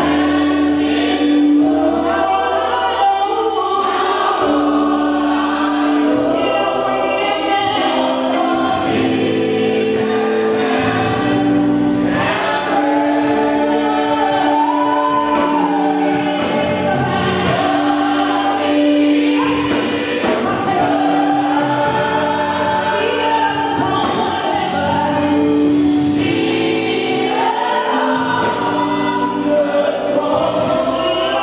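Church congregation singing a gospel worship song together, with long held notes recurring underneath the voices.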